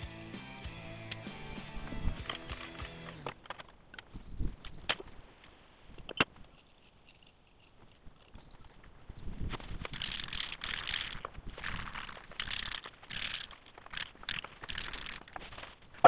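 Background music for the first three seconds, then a few sharp clinks and knocks as small steel target stands are set down on a concrete floor. After a quiet spell comes a stretch of scuffing and rustling as the stands are shuffled into rows.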